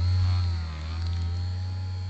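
A loud, steady low hum that starts abruptly and holds level, with a fainter wavering tone above it.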